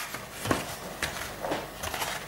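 Paper-covered cardboard picture frames being handled over a table: several light knocks and rustles, about one every half second.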